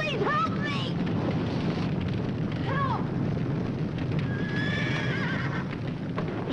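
A horse whinnying several times, with a long wavering whinny about four to five seconds in, over a steady low rumble.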